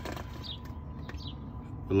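Electric radiator cooling fan running steadily under the hood, a low hum with a thin steady whine over it, and a few faint high chirps.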